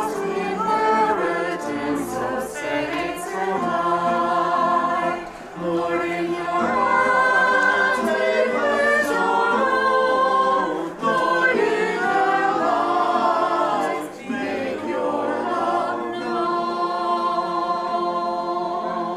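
A choir singing, with short breaks between phrases about five, eleven and fourteen seconds in.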